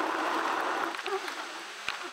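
Steady rushing road noise of a moving car, heard from inside the cabin. It drops a little in the last half second, and a single click comes just before the end.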